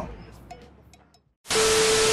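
Music fades out into near silence, then about a second and a half in a loud burst of TV static hiss starts suddenly, with a steady tone underneath it: a glitch transition sound effect.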